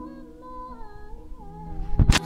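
A woman singing softly, holding long notes that waver and slide in pitch, over a faint held low chord.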